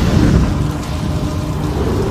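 Rumbling thunder-and-fire sound effect of an animated channel logo sting: a steady, dense low rumble with hiss above it.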